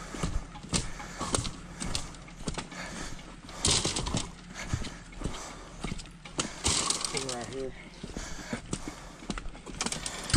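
Footsteps walking downhill on a hard, gritty path, about two steps a second, with a couple of louder scuffs.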